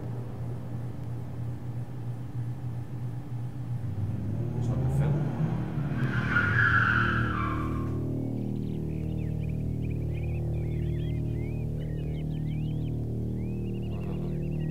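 The sound-design intro of a music video: a low steady drone, a short screeching noise about six seconds in, then birds chirping over the drone.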